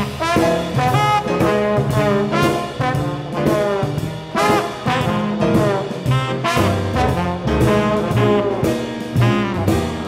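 Small jazz band playing live in swing time: tenor saxophone and trombone playing lines together, over double bass, piano and drums.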